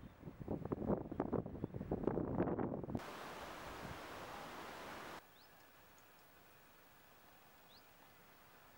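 Outdoor wind buffeting the microphone in irregular gusts, then a steady even hiss that cuts off suddenly about five seconds in, leaving silence.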